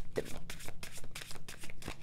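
A deck of tarot cards being shuffled by hand: a quick, even run of soft card flicks.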